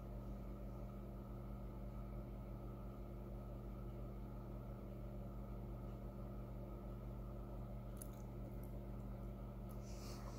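Steady low hum, with a few faint clicks near the end.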